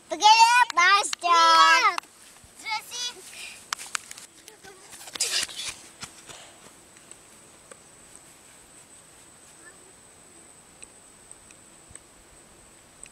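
A young child's high-pitched voice calling out loudly for the first two seconds. Fainter voice fragments and a brief rush of noise follow about five seconds in, then only quiet outdoor background with a few faint ticks.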